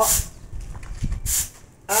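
A paint brush's bristles sweep once across bare concrete, a short dry brushing hiss a little over a second in, clearing fine dust from the roof deck before asphalt primer goes on.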